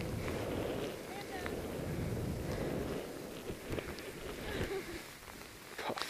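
Skis rushing through deep powder snow with wind on a helmet camera's microphone, dying down about halfway through as the skier slows to a stop in the deep snow.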